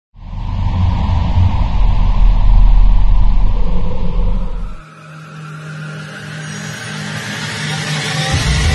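Cinematic logo-intro sound design: a loud, deep rumble that cuts off suddenly about five seconds in, followed by a rising whoosh over a low hum that keeps building.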